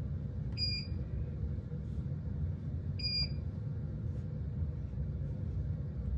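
Two short, high electronic beeps about two and a half seconds apart from a small device, over a steady low background hum.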